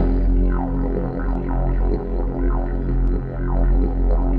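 Soundtrack music opening on a didgeridoo: a steady low drone whose tone is swept again and again in a pulsing rhythm.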